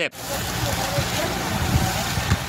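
Outdoor field audio at a smouldering poultry-house fire: a steady rushing hiss with uneven low rumbling, as of wind and burning, and faint voices in the background.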